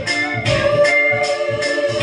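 Electronic keyboard playing an instrumental passage of a pop song: sustained organ-like chords over a steady beat with percussion strikes roughly twice a second.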